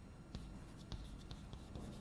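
Chalk writing on a blackboard: faint, irregular taps and scratches as the chalk strokes out characters.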